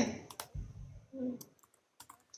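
A few faint, sharp clicks during a pause in speech.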